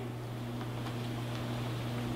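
Quiet room tone in a pause between words, with a steady low hum underneath.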